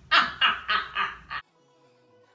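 A young woman's loud laughter, about five quick peals, cutting off abruptly about a second and a half in; faint music continues after.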